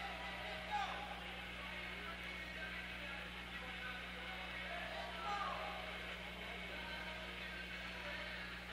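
Faint background music over a steady low hum of the arena's sound system, with brief shouts from the crowd about a second in and again about five seconds in.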